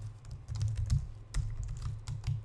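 Computer keyboard being typed on: scattered, irregular keystroke clicks as a terminal command is entered.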